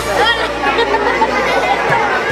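Many overlapping voices chattering at once, a steady hubbub of conversation.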